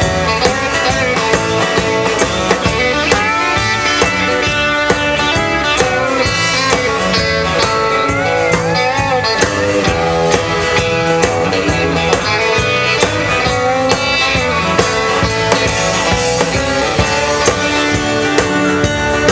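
Live band playing: guitars over drums with a steady beat, some guitar notes sliding in pitch.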